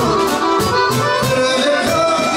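Live folk band music led by a button accordion playing a busy melodic line over a steady drum-kit beat.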